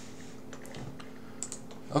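A few faint, scattered clicks from a computer keyboard and mouse, over a low steady background hum.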